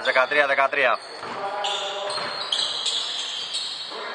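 Speech for about the first second, then high squeaks from basketball shoes on the hardwood court, several overlapping and stepping in pitch, with faint voices in the background.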